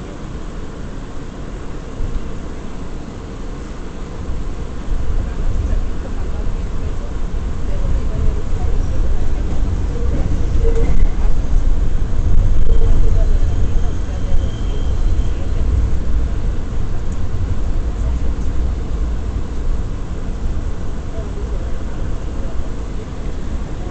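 Ride noise inside an R179 subway car in motion: a low rumble of wheels on rail and running gear that swells a few seconds in, is loudest around the middle, then holds steady.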